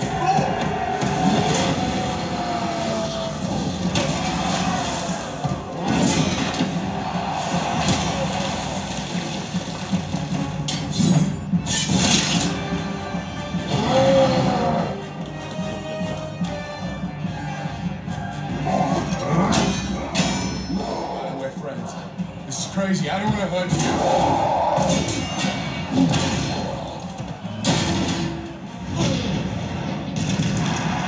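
A film soundtrack (dialogue, music and effects) played through a Yamaha YAS-108 soundbar at maximum volume in stereo mode. It is loud and continuous, with several sharp hits along the way.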